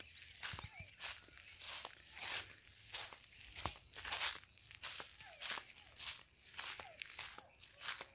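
Faint footsteps walking over loose, freshly tilled soil, about two steps a second.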